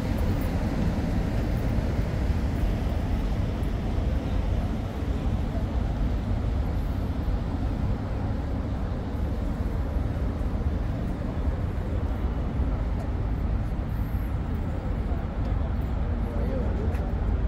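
Steady low rumble of city traffic, with no distinct events, and indistinct voices mixed in.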